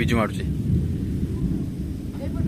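Thunder rumbling low and steady from a storm overhead.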